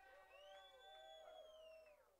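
Near silence, with faint indistinct pitched sounds, like distant voices in the room.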